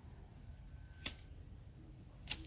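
A single sharp click about a second in, over faint outdoor background with a thin, faint high tone.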